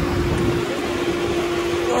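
Fire truck engine running, a steady drone with one constant hum held throughout.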